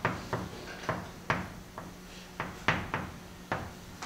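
Chalk writing on a blackboard: a series of about ten short, sharp taps and scrapes as each stroke of the characters is written.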